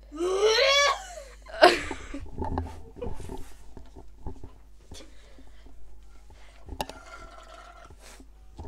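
A person gagging: a strained, rising vocal sound, then a sharp, loud retch about a second and a half in, followed by rustling and small knocks.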